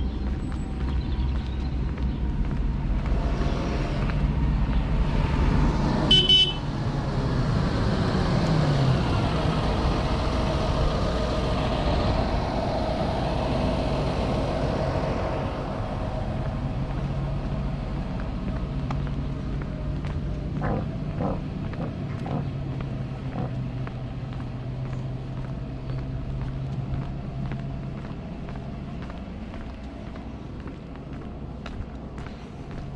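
A road vehicle approaches and passes, with a short high toot about six seconds in. The vehicle noise builds, then fades over the next ten seconds, leaving a low steady hum.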